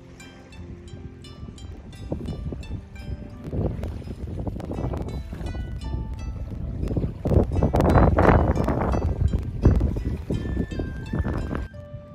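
Background music with soft, evenly struck notes, under a rumbling gust of wind on the microphone that builds from about two seconds in, is loudest around the middle, and drops away just before the end.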